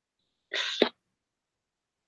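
One short sneeze about half a second in: a hissy burst that ends in a sharp snap.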